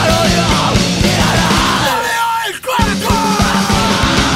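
Hardcore punk song with yelled vocals over distorted guitars, bass and drums. About two seconds in, the bass and drums drop out for under a second, then the full band comes back in.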